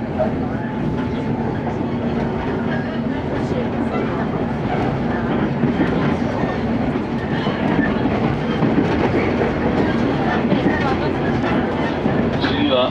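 Steady running noise heard inside a JR West Series 115 electric train car moving at speed: a continuous rumble of wheels on rails, growing slightly louder in the second half.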